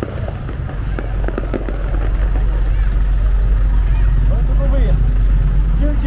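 Outdoor crowd ambience: voices over a heavy, steady low rumble, with several sharp pops in the first two seconds.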